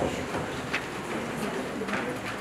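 Low murmur of chatter in a hall, with a few faint knocks of footsteps on stage risers.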